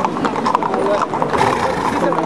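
Hooves of many Camargue horses clip-clopping at a walk on a paved street, a dense irregular stream of strikes, over the chatter of a crowd.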